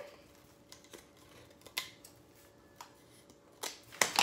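Scissors snipping through plastic deco mesh: a few faint, separate snips spread across a few seconds.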